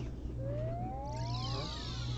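Anime soundtrack: several quiet, overlapping tones sliding up and down in pitch, starting about half a second in, over a steady low hum.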